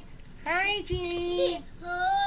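A young girl singing a few high, held notes without clear words.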